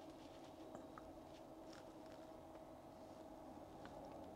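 Near silence: a faint steady hum with a few tiny, faint ticks.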